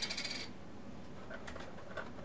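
Metal Pokémon TCG coin set down on the table, giving a short bright metallic ring that dies away within about half a second, followed by a few faint clicks.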